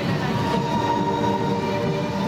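Parade music from the troupe's loudspeakers, holding long steady notes over a busy low backing.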